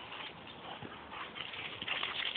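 Dogs' paws pattering and scuffling on dry grass as a Doberman and two boxers run and play, an irregular scratchy patter that grows louder near the end.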